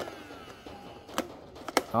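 A few short plastic clicks, one about a second in and a pair near the end, from a handheld mattress vacuum cleaner being handled; its motor is not running.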